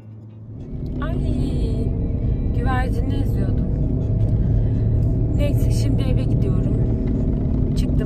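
Steady low rumble of road and engine noise inside a moving car's cabin, rising in about the first second and then holding level.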